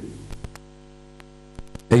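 Steady electrical mains hum on the audio line, with a few faint clicks.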